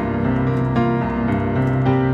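Digital piano played from a keyboard: rich extended jazz-style chords over a held low C in the bass, with new chords struck a few times as the harmony moves.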